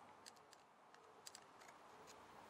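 Near silence broken by a few faint clicks from a screwdriver tightening a small screw into a Walbro carburettor's metal body.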